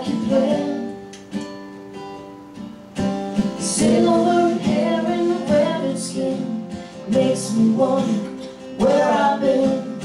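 Live band playing a slow country-folk song, with strummed acoustic guitar, electric guitar, bass and fiddle. The playing thins out about a second in, and the full band comes back around three seconds in.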